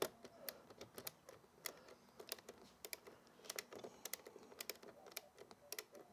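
Faint, irregular clicking of a ratcheting screwdriver as small screws are backed out of a truck seat's plastic front trim plate.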